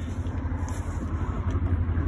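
Steady low rumble of an idling engine.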